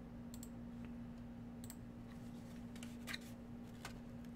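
A few scattered sharp clicks from a computer keyboard and mouse, a pair about half a second in and a cluster near the end, over a steady low hum.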